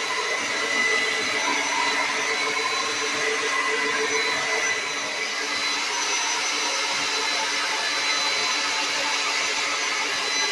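Hand-held hair dryer running steadily while drying hair: a constant rush of air with a steady whine in it.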